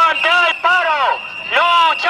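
A voice shouting a protest chant in long, arching syllables, with a steady high-pitched whine underneath.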